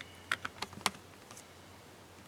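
About five sharp clicks and light taps in the first second and a half, uneven in spacing, from a quiet unprocessed noise improvisation, over a faint steady low hum.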